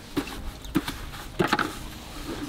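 A paintbrush worked in a plastic bucket of liquid, giving a few short, light knocks and taps against the bucket.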